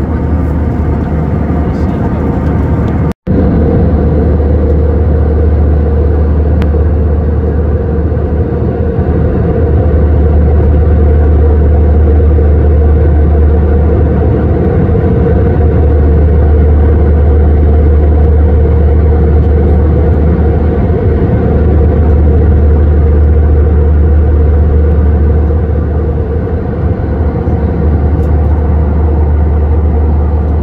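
Steady jet airliner cabin noise at cruise: engine and airflow roar with a strong deep drone. The sound drops out for an instant about three seconds in.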